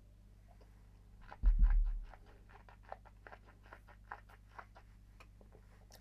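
Small wet mouth and tongue clicks of someone tasting a sip of whisky, many quick smacks in a row. A dull low thump comes about one and a half seconds in.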